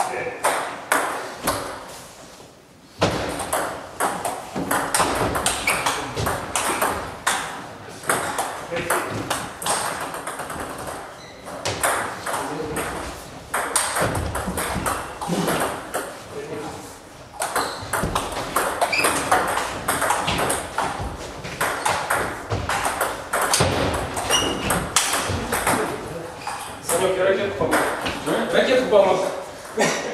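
Table tennis ball clicking back and forth between bats and table top in rallies: quick, irregular sharp knocks, with a brief lull about two to three seconds in.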